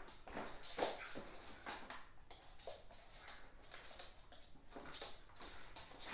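A cat and a dog play-fighting on a wood-look floor: faint, irregular scuffles, taps and plastic-bag rustles as they tussle.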